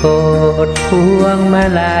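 Thai luk thung song sung over a karaoke backing track: a solo voice holding and sliding between long notes over steady instrumental accompaniment.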